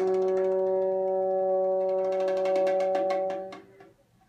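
Bassoon holding one long, steady note for about three and a half seconds before it dies away, with light bongo taps underneath that come faster toward the end. Both stop shortly before the end, leaving a moment of near silence.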